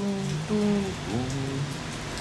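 Melody of a French chanson between sung lines: a few held notes with an upward glide about a second in, over a steady hiss.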